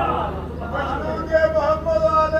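A man's voice through a microphone and loudspeakers, speaking and then, from about halfway in, drawing out long held tones in a chanting delivery, over a steady low hum from the sound system.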